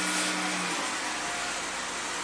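A 3.6 L Pentastar V6 idling just after start-up, heard from inside the cabin as a steady hum, with a low steady tone that drops out under a second in. It is running smoothly now that its cam timing has been corrected after a cam that had slipped one tooth was causing the P0018 cam-crank correlation code.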